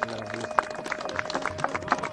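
Tabla drumming: a fast, dense run of strokes over one steady held note.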